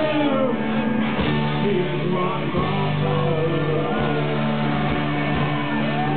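Live rock band playing, led by electric guitar, with drum hits throughout.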